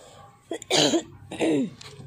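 A woman coughing twice, two harsh coughs about half a second apart in the second half.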